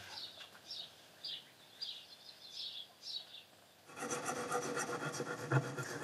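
A chisel working wood: short, faint scraping strokes, then a louder, continuous scraping from about four seconds in.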